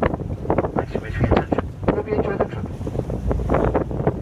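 Wind buffeting the microphone over the steady low drone of a tour boat under way, with indistinct voices mixed in.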